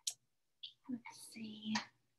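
Soft whispered voice sounds with a short click at the start, quiet and broken up, picking up about a second in.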